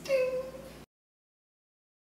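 A single short, high-pitched vocal cry that falls slightly in pitch over about half a second, over faint room hiss. The sound then cuts off abruptly to silence.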